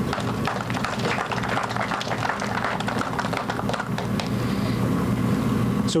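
Crowd applauding, many hands clapping at a steady level.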